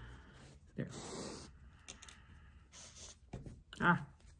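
A sashiko needle and thread pulled through layered fabric, with the cloth handled in the hands: a rustling, scratchy swish about a second in, lasting under a second, and smaller rustles after it.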